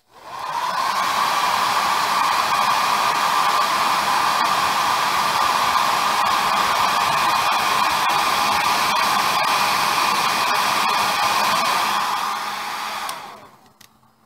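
Conair 1875 hand-held hair dryer switched on with a click, coming up to speed within a second and blowing steadily, then switched off near the end and winding down.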